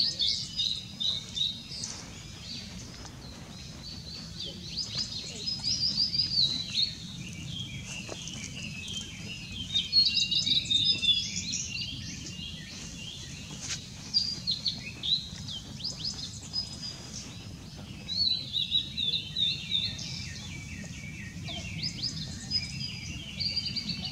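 Male blue-and-white flycatcher singing: about six short whistled phrases a few seconds apart, each a quick run of high notes.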